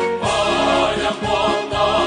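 Music with a group of voices singing together over an accompaniment.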